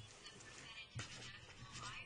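Quiet room with faint, indistinct voices in the background.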